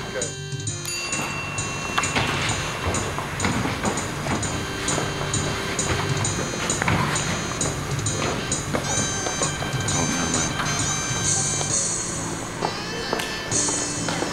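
Background music with a steady beat, and voices within it.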